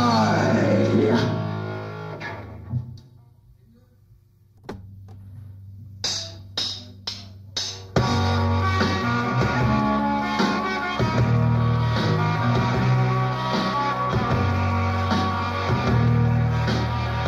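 Punk rock band playing live on an old tape recording: a song ends with a falling slide and dies away, a low note sounds, then four sharp, evenly spaced clicks count in and the full band starts the next song about halfway through.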